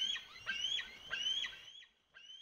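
Gulls calling: a series of short high cries, about two a second, each rising and then dropping in pitch.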